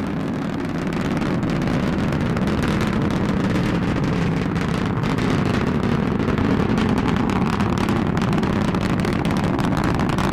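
Falcon 9 first stage, nine Merlin 1D engines, heard from the ground during ascent: a loud, steady, deep rumble laced with crackle, swelling slightly about a second in.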